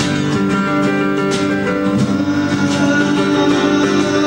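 Live folk band playing an instrumental passage: strummed acoustic guitar with hand-played frame drum and drum kit, a few sharp drum and cymbal strokes over steady held notes.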